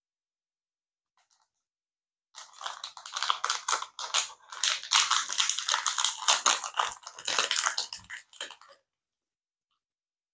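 Foil pouch crinkling and crackling as it is torn open by hand, a dense run of crackles lasting about six seconds that starts a couple of seconds in.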